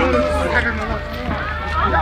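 Many overlapping voices of a crowd talking and calling out, laid into a music track over a steady low bass drone.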